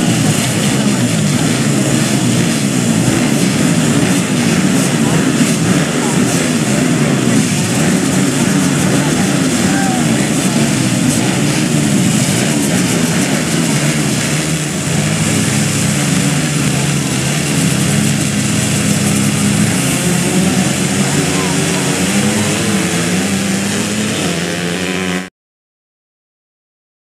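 Many small motocross bike engines revving together at a starting gate and on the track, their pitches rising and falling over one another; the sound cuts off suddenly near the end.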